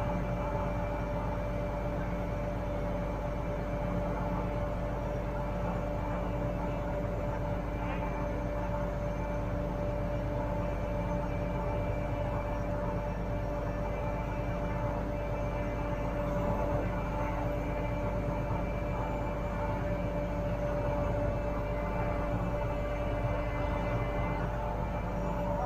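Liebherr LTM 1230-5.1 mobile crane running steadily: an even engine hum with several held tones over it and no change in pace.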